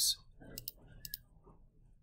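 A few faint computer mouse clicks, about three, between half a second and a second in, as on-screen calculator keys are pressed.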